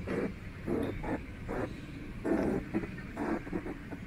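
Footsteps on a tiled stone floor at a walking pace, about two steps a second.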